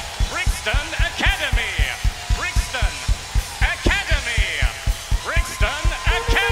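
A live band playing, driven by a fast, steady kick-drum beat, with a repeating figure of sweeping high notes above it.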